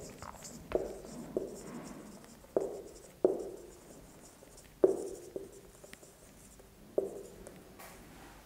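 Felt-tip marker writing on a whiteboard, with about seven sharp, irregular knocks as strokes hit the board, each followed by a short ring, over faint scratching of the tip.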